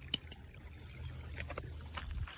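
Faint trickling water over a low steady rumble, with one light click just after the start.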